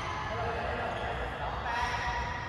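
People talking in a badminton hall, over a steady low hum.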